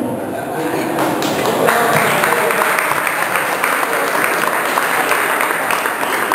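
Audience applauding, swelling about a second and a half in, with voices over the clapping.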